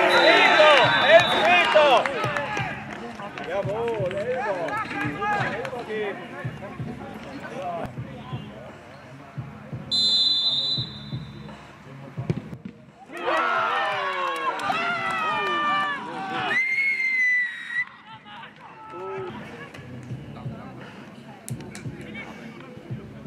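Players and spectators shouting on a football pitch. About ten seconds in, a referee's whistle blows once for about a second, signalling the penalty kick. A few seconds later comes another burst of shouting voices as the kick is taken.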